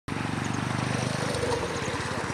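Small motorcycle engine running with a fast, steady pulsing beat. Its sound shifts a little over a second in.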